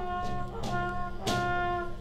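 Two trumpets playing held notes in a small school ensemble, with a drum struck twice, about two thirds of a second in and again just past a second.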